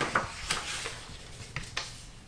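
Paper pages of a book rustling as they are handled, in a few short bursts about half a second to a second apart.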